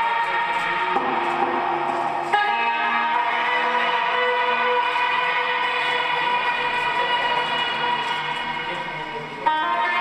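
Lap steel guitar played through a chain of effects pedals and an amplifier, making noise music: a thick sustained drone of many held tones at once. The texture changes suddenly about two seconds in, fades slightly, then a new loud attack comes near the end.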